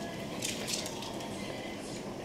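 Small dogs moving about and sniffing each other on a hard floor: a few short, hissy scuffs and rustles about half a second in, over a steady room hum.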